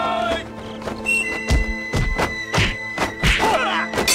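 Martial-arts fight sound effects: a quick run of punch and kick impacts with swishing whooshes, starting about a second and a half in, over dramatic background music.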